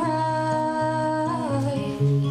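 A woman's voice holding one long sung note that drops in pitch near the end, over acoustic guitar.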